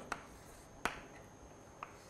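Chalk striking and tapping a blackboard while writing: three short, sharp clicks, the loudest a little under a second in.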